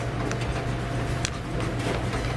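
Steady low kitchen hum with two light clicks, a spoon against the pan as butternut puree is stirred into creamy risotto.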